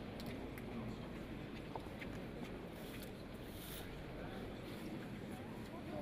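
Faint, indistinct voices over a steady low background hum, with a few light clicks.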